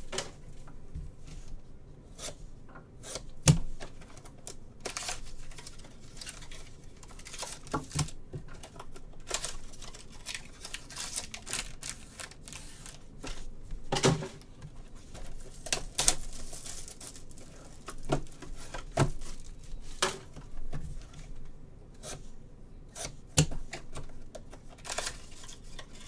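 Sealed trading-card boxes and their plastic wrap being handled on a tabletop: irregular knocks and clicks as the boxes are set down and stacked, with brief rustles and tearing as one is opened.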